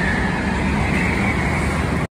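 Go-karts running past on an indoor track: a loud, steady motor whine over a low rumble.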